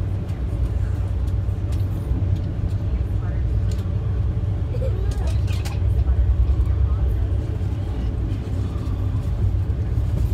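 Steady low rumble of an Amtrak passenger car riding the rails at speed, heard from inside the coach. A few sharp clicks fall around the middle.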